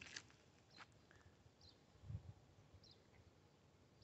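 Near silence outdoors, with a few faint, short, high chirps from a distant bird and one soft low bump about two seconds in.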